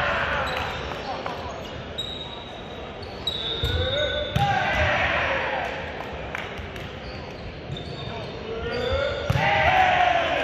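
Volleyball play in a reverberant gym: several sharp hits of the ball, short high squeaks of sneakers on the hardwood floor, and players shouting calls.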